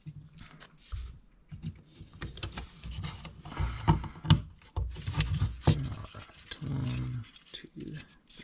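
Laser-cut plywood kit parts being handled and pressed together, a run of small sharp wooden clicks and knocks with rubbing and scraping between them.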